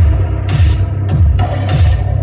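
Loud live electronic music played on stage synthesizers: a deep kick drum falling in pitch about twice a second, under bright noisy synth washes.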